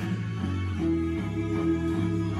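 Rock song with guitars playing from a kitchen radio, heard through its small speaker, with a steady bass line under a held guitar chord.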